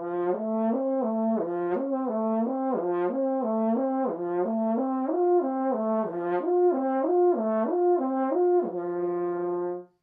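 French horn playing a lip slur exercise on the horn's natural arpeggio without valves, on the open F horn: an unbroken slurred line of notes stepping up and down. It ends on a long held low note that stops just before the end.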